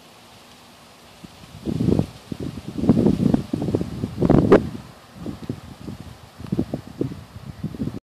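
Wind buffeting the microphone in irregular low gusts, starting about a second in and strongest around the middle.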